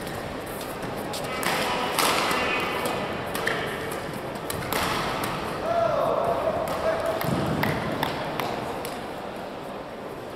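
Badminton rally: racket strings striking the shuttlecock in a quick exchange of sharp hits, with shoes squeaking on the court mat. A player's voice calls out about halfway through.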